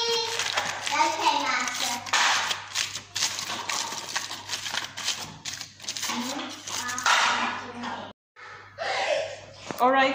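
Children's voices talking indistinctly, with a brief cut to silence about eight seconds in.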